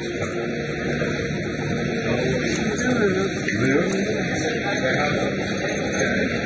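Steady background noise with indistinct voices speaking in the middle of it.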